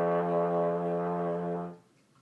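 Solo trombone holding one long, steady note that tapers off and stops near the end.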